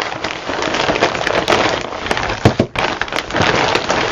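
Plastic packaging crinkling and rustling as a bag is handled and opened, a dense crackle of small clicks with a couple of sharper cracks a little past halfway.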